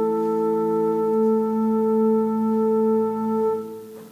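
Church organ holding a sustained chord, with one inner note moving about a second in; the chord fades and is released near the end.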